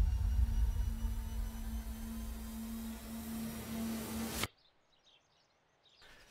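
A deep, steady rumble with a low hum held over it, cutting off suddenly about four and a half seconds in.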